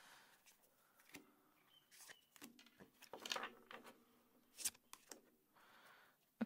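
Faint handling of a tarot deck: cards being shuffled and set down on a wooden table, heard as a few soft scuffs and light clicks, with one sharper click near the end. Otherwise near silence.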